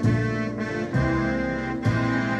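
Yamaha Genos 2 arranger keyboard playing chords over its automatic style accompaniment at a slow tempo, with a new chord and bass note about once a second.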